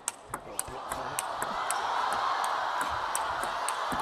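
Table tennis rally: the plastic ball clicking off rackets and table in a quick, even series, about four clicks a second. Under it the arena crowd's noise swells steadily as the rally goes on.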